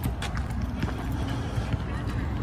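Footsteps walking on a paved path, irregular steps a few times a second, over a steady low rumble on the phone microphone.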